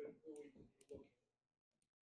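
A faint, distant voice speaking for about a second, then dead silence.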